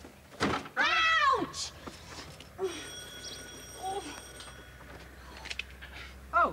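A thud, then a long meow-like call that rises and falls in pitch, followed by a couple of fainter short calls.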